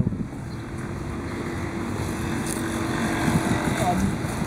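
Low rumble of road traffic, with a steady engine hum that drops away about three seconds in.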